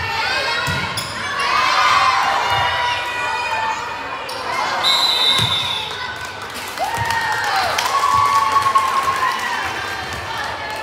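Volleyball rally in a gym hall: a few dull thuds of the ball being hit, under high-pitched shouting and cheering from players and spectators that grows loudest near the end as the point is won.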